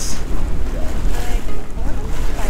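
Wind buffeting the camera microphone as a steady low rumble aboard a sailboat under sail with its engine off. Faint voices come through briefly about a second in.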